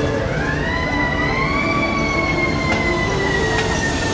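A siren rising in pitch over about a second and a half, then slowly falling, over background music.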